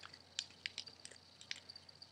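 Faint crinkles and ticks of thin origami paper handled between the fingers as a folded pocket is pried open, a handful of separate small clicks.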